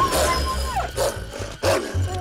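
Large dog barking loudly several times, about half a second apart, with a deep growl under the barks, over background music.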